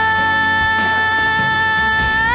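A young female pop singer holding one long steady note in a live ballad, over soft backing music. The note is not very high, and she sings it without audible strain.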